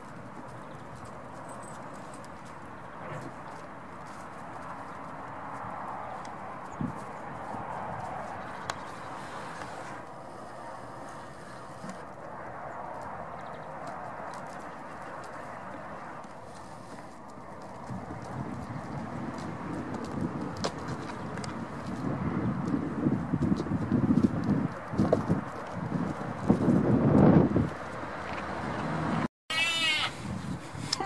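Goats moving about a pen: hooves knocking and scrabbling on wooden logs and rustling straw, with scattered knocks, getting louder and rougher in the second half. A goat bleats briefly right at the end.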